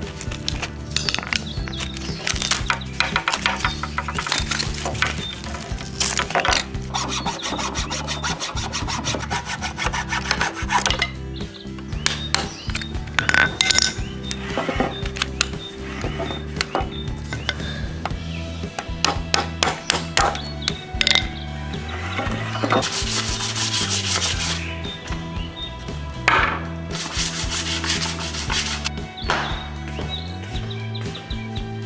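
A flat metal blade scraping bark off a tree branch, later a utility knife shaving the bare wood, in bursts of quick rasping strokes. Soft music runs underneath.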